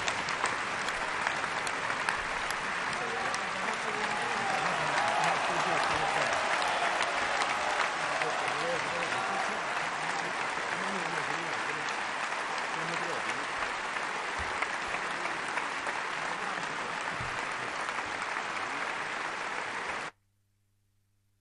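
Large crowd applauding steadily, a long, dense ovation with voices mixed in.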